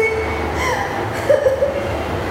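A young woman crying: breathy, noisy sobbing with short high-pitched cries about half a second and a second and a half in.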